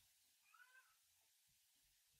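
Near silence: room tone, with a very faint short call that rises and falls in pitch about half a second in.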